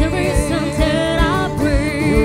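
Live band playing a slow pop ballad: a singer's voice over digital piano and guitar chords, with a steady low beat about twice a second.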